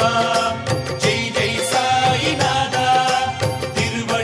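Instrumental interlude of a Tamil Sai Baba devotional song (bhajan): held melodic notes over a steady percussion beat, with no voice singing.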